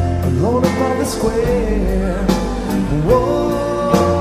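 Live rock band playing an instrumental passage: an electric guitar melody with notes that slide up in pitch, over bass and drums with cymbal strikes.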